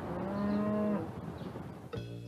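A cow mooing once: a single low, steady call lasting under a second near the start.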